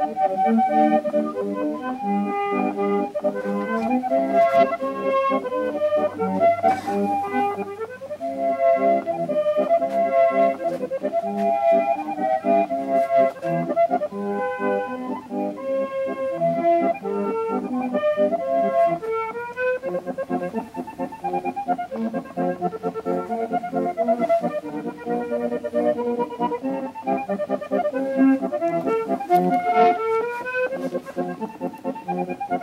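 Accordion music: a melody over held chords, playing without a break.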